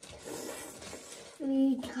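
Faint room noise, then a person's voice starting about a second and a half in, holding a steady pitch briefly.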